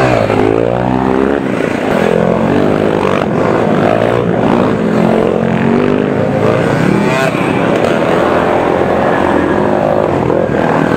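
A procession of dirt bikes riding past one after another. Several engines are heard at once, their notes rising and falling as each bike revs and passes.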